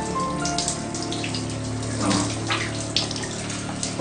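Shower water running and splashing, under soft sustained background music.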